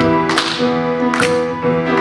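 Live worship band playing an instrumental passage between sung lines: sustained chords from piano and guitars with sharp drum or cymbal strikes marking the beat.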